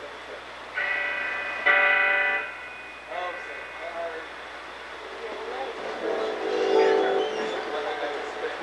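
Electric guitar and keyboard of a live rock band sounding loose held chords through the amplifiers: a short chord just under a second in, a louder, fuller one that rings for under a second, then quieter wavering single notes and held notes rather than a full song.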